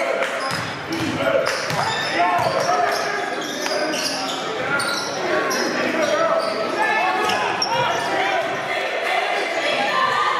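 Live basketball game sound in a gymnasium: a basketball bouncing on the hardwood court as players dribble, under steady crowd and player voices echoing in the hall.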